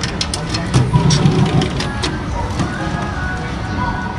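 A key clicking in the lock of a glass display case, with keys jingling and the case rattling: a quick run of small clicks in the first two seconds as the case is unlocked and opened.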